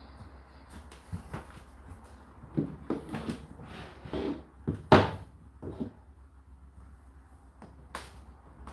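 Indesit IDC8T3 condenser tumble dryer running with a steady low hum, with irregular thuds and knocks, the loudest about five seconds in. A short click comes near the end.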